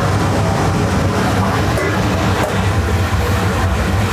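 Pasta and pasta water sizzling in an aluminium pan of hot olive oil on a gas range, a steady hissing over a constant low rumble.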